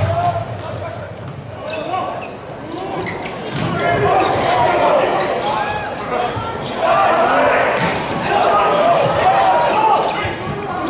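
Indoor volleyball rally with no commentary: the ball struck sharply on serve, pass, set and attack, amid many short squeaks of sport shoes on the court floor, the squeaks thickest in the second half.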